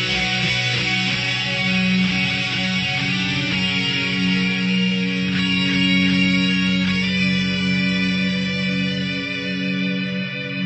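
Heavy metal music: distorted electric guitars holding long chords over a steady low note, the bright distorted top thinning out after about seven seconds.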